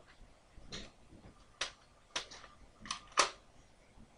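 About five sharp plastic clicks and knocks at uneven intervals, a spring-loaded toy dart gun being picked up and handled.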